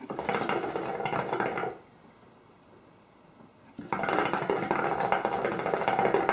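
Hookah water base bubbling as smoke is drawn through the hose: two pulls, a short one of under two seconds and, after a pause, a longer one of about three seconds.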